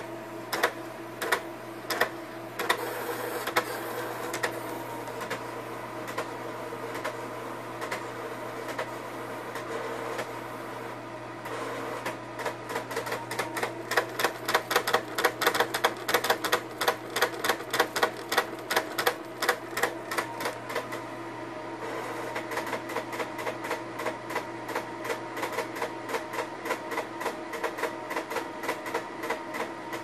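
Pen plotter drawing a grid: its motors whine steadily as the pen and paper move, with sharp clicks of the pen lifting and dropping. The clicks are spaced at first, come in a fast run about halfway through, then continue more lightly.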